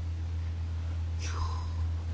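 A steady low hum, with a faint short sound sliding downward in pitch about a second in.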